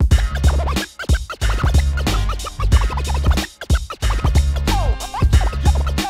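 Turntable scratching over a hip hop beat with a heavy bass line. The scratches are quick back-and-forth pitch sweeps, and the beat drops out briefly a little past the middle.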